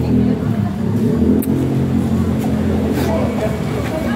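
A steady low engine hum, like a motor vehicle idling, with faint voices in the background.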